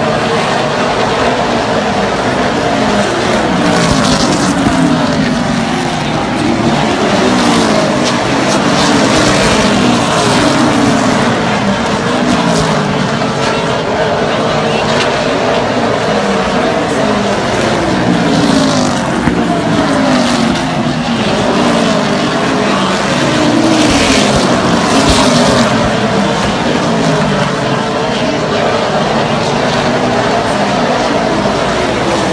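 Super late model stock cars' V8 engines running as the cars circle the oval. Their pitch rises and falls again and again as cars pass.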